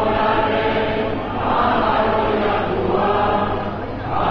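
A large crowd of men and women singing a Basque song together in unison, many untrained voices in loose chorus, with short breaks between phrases about a second in and again near the end.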